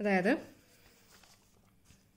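A short spoken word at the start, then faint paper rustling and soft ticks as sheets of handwritten notes are slid across a desk.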